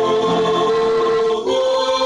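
A small mixed group of male and female voices singing a Chinese hymn together, holding long notes and moving to a new note about one and a half seconds in.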